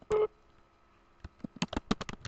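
A short, loud tone, about a fifth of a second long, just after the start, then quick computer-keyboard keystrokes from a little past the middle, several clicks a second, as an IP address is typed into a router's command line.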